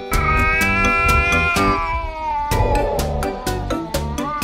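Tabby cat yowling: one long drawn-out call that rises slightly and then falls, followed by a second, lower call. Background music with a steady beat plays underneath.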